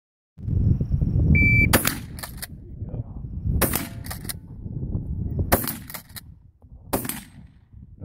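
A shot timer beeps briefly, then a Winchester 1897 pump-action shotgun fires four shots about two seconds apart, the time between them spent working the slide. Each shot is followed closely by a shorter, fainter sharp sound.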